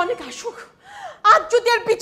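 A woman's voice: a short breathy sound, then quick, animated speech from a little past halfway in.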